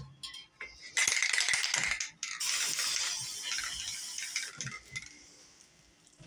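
Aerosol spray paint can hissing in two bursts: a short one about a second in, then a longer one that fades out around five seconds in.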